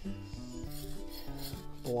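Hands scraping and rubbing dry garden soil around a freshly transplanted seedling, a gritty rasping with small irregular ticks, over quiet background music.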